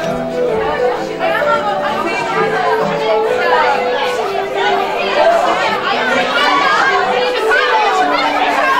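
A crowd of young actors chattering all at once, many overlapping voices with no words standing out, over music with long held notes.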